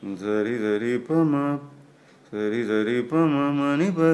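A man singing the song's melody line unaccompanied, in two sustained phrases with a short pause between them.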